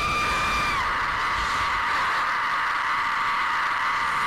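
A woman screaming: one long held scream at a steady high pitch that turns ragged about a second in.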